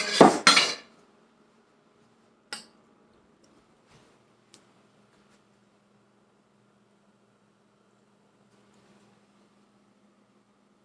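A metal utensil clinking and scraping quickly against a cooking pot, stopping under a second in, then one sharp clink a couple of seconds later and a few faint taps. After that it is nearly quiet, with only a faint low hum.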